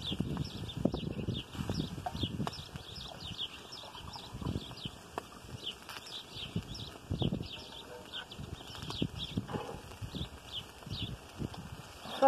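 Small birds chirping repeatedly, many short high chirps a second, with irregular low gusts of wind rumbling on the microphone.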